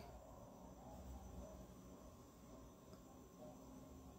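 Near silence: faint room tone with a low steady hiss.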